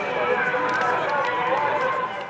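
Several voices talking over one another in a steady babble, with no one speaker standing out.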